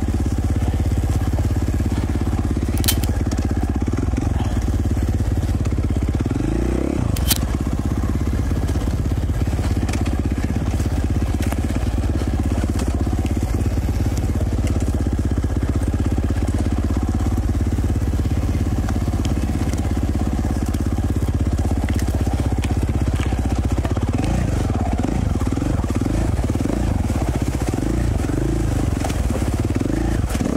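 2017 KTM 450 XC-F's single-cylinder four-stroke engine running as the dirt bike is ridden slowly along a rocky trail. The revs rise briefly a few seconds in and rise and fall repeatedly near the end, with a couple of sharp clicks early on.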